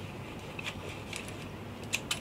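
Faint clicks and light rattling of a metal tether clip and its webbing being handled at a lifejacket harness, with a sharper click near the end.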